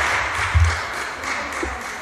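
Applause from a group of people, dying away through the two seconds, with a brief low bump about half a second in.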